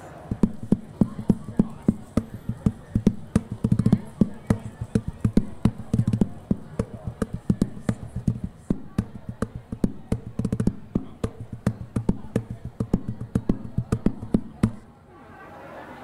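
A bucket played as a hand drum with bare palms and fingers: a fast, steady rhythm of deep thumps and sharp slaps that stops about a second before the end.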